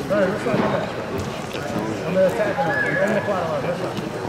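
Several voices talking and calling out at once, overlapping and mostly indistinct, from coaches and spectators around a grappling mat.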